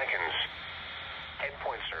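NOAA Weather Radio broadcast received on 162.400 MHz and played through the small speaker of a Radioddity GD-77 handheld. An automated voice reads marine buoy observations; after a hiss-filled pause it resumes about a second and a half in.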